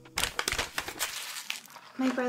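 Plastic packaging of an at-home COVID test kit crinkling in the hands in a run of irregular crackles, busiest in the first second.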